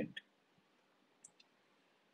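Near silence after the last word trails off, broken by two faint, short clicks a little over a second in.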